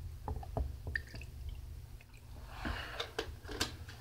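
A few faint clicks of a glass being handled, then a short breathy rush with more clicks about three seconds in.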